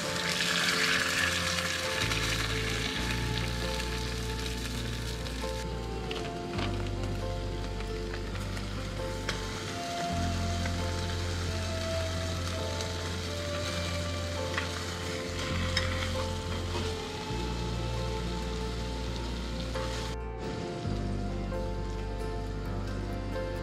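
Eggs and hamburger patties sizzling as they fry in pans on a camp stove, loudest in the first couple of seconds. Background music with a slow bass line plays throughout.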